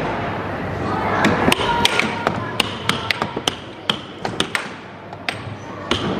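Irregular sharp plastic clacks of air hockey mallets and puck knocking on the table, about fifteen in a few seconds, over the steady din of an amusement arcade.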